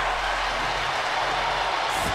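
Steady arena crowd noise during play, an even murmur with no distinct cheer or impact.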